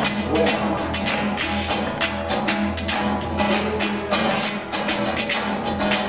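Nylon-string acoustic guitar strummed in a steady rhythm, with hand-jive body percussion: a quick run of sharp hand slaps and claps on top.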